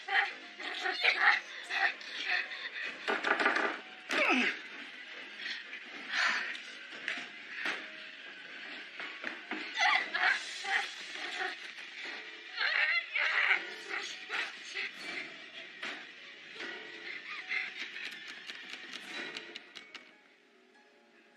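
A woman choking and gasping as she is strangled, with strained struggling cries in irregular bursts, the loudest in the first few seconds, over a music score.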